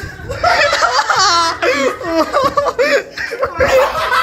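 Several young men laughing loudly together, in overlapping bursts, while a wax strip is pressed onto one man's leg.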